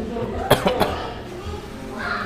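A person coughing: a quick run of about three short coughs about half a second in.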